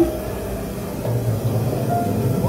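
Haunted-attraction ambient soundtrack: a steady low rumble under sustained eerie tones, with a brief louder note right at the start.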